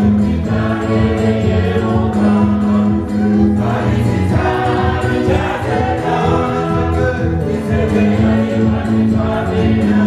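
Gospel song: several voices singing together to an electronic keyboard accompaniment, with long held bass notes under the melody.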